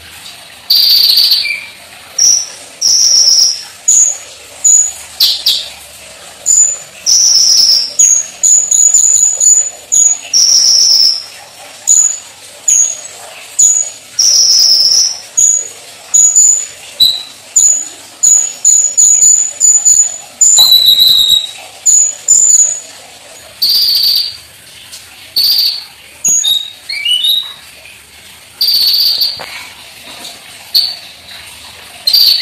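A caged kolibri ninja, a sunbird, singing loudly and without a break. Its song is a fast run of short, very high chirps and sharp whistled notes in quick phrases, with a few rising trills near the end.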